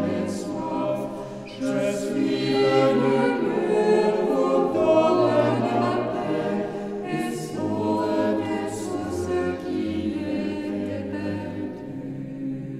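Mixed choir of nuns and friars singing a French hymn a cappella in several voice parts, with sustained chords and phrases that swell and ease.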